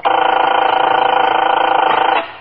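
A loud, steady sustained tone made of several held pitches, with a fast flutter in its loudness. It starts abruptly and cuts off after about two seconds, a sound-effect or musical sting in a 1950s radio drama.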